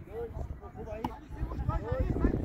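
Voices calling out, with a single sharp knock about a second in.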